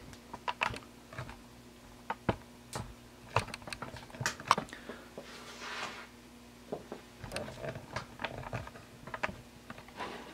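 Irregular clicks, taps and knocks from objects and the camera being handled close to the microphone, with a brief rustle about five and a half seconds in and a faint steady hum underneath.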